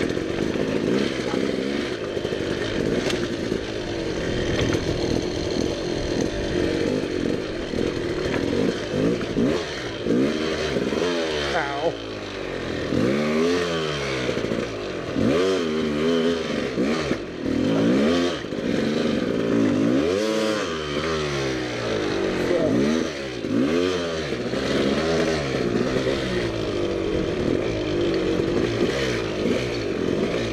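Dirt bike engine under load, revving up and dropping back again and again in short throttle bursts as the bike is worked over loose rock. The first third is steadier; from about a third of the way in the revs swing up and down every second or two.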